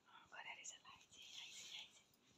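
Faint whispering.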